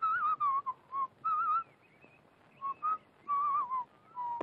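A person whistling a tune in five short phrases with brief gaps between them, the pitch wavering up and down.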